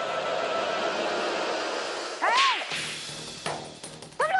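Dramatic TV-serial background music, with a sudden swishing sound-effect sting about halfway through that rises and falls in pitch.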